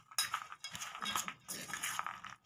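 Metal spoon stirring raw peanuts and dry flour in a stainless steel bowl: irregular scrapes and light clinks of steel on steel.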